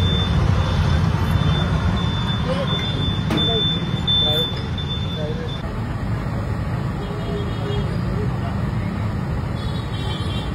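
Steady low rumble of street-stall background noise with faint voices behind it; a thin high tone stops suddenly about halfway through.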